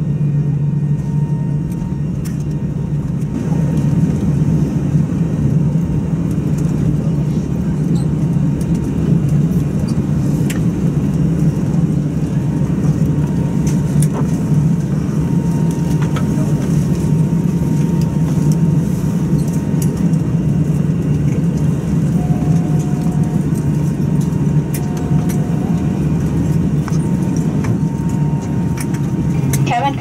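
Steady low rumble inside an Airbus A320's cabin as it taxis on idling jet engines, with a thin steady whine above it. Two short faint tones sound about three-quarters of the way through.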